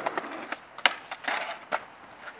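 Skateboard wheels rolling over pavement, fading out in the first half second, then a handful of sharp clacks of the board on the ground, the loudest a little under a second in.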